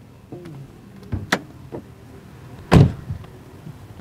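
The driver's door of a 2014 Kia Sorento swung shut with one solid thud, almost three seconds in. A few sharp clicks from inside the car come a little earlier.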